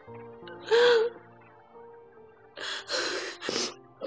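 A woman crying over soft background music: a short voiced cry about a second in, then three ragged sobbing breaths near the end.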